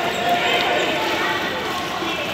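Several people talking and calling out at once, overlapping voices with no single clear speaker.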